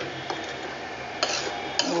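A metal spoon clinking and scraping against a metal cooking pot while a thick curry is stirred, with a couple of sharp clinks in the second half.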